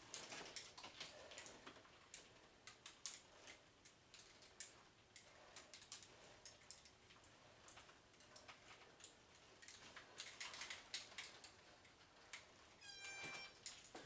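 Near silence with faint, scattered clicks and light rustling from a seated resistance-band arm-curl exercise, and a brief squeak about a second before the end.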